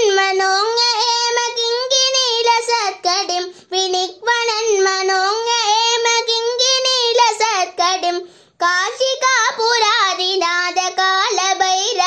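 A boy singing a Sanskrit devotional hymn to Bhairava solo, drawing out long, ornamented notes, with brief breaks for breath about three and a half and eight and a half seconds in.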